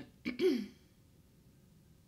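A woman briefly clears her throat: one short voiced sound about half a second in.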